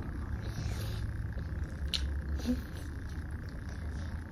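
Quiet eating sounds, cake being eaten off spoons and forks, with a faint utensil tick about halfway, over a steady low background hum.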